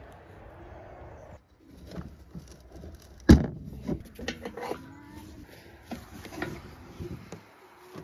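Scattered light clicks and handling noises as a hand works the metal hook of a boat trailer's winch strap, with one sharp knock about three seconds in.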